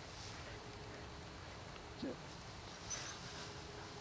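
Faint outdoor field background noise, with one short spoken command about two seconds in.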